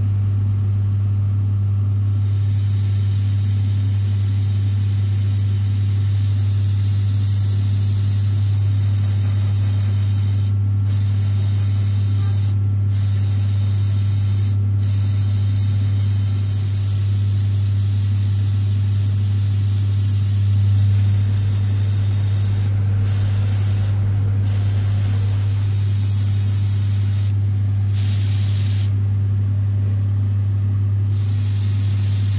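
Airbrush spraying paint onto small plastic model parts with a steady hiss that cuts off briefly several times as the trigger is released, over a steady low motor hum.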